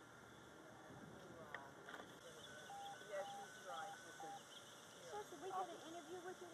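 Faint outdoor ambience: a bird gives four short whistled notes of one pitch, then indistinct distant voices come in near the end.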